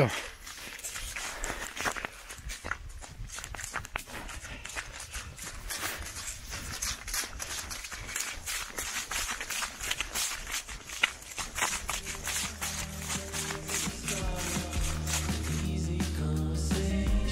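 Running footsteps over snow-dusted fallen leaves on a forest path: many short, irregular rustles and crunches. About twelve seconds in, background music fades in and continues.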